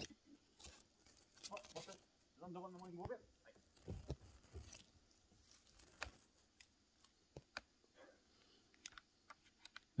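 Near silence with faint scattered clicks and crackles, and a brief voice sound about two and a half seconds in.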